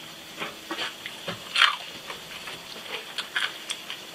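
Close-up chewing of a very crunchy deep-fried fish and corn fritter (a fish hush puppy): a run of short, crisp crackling crunches, with one louder crunch about a second and a half in.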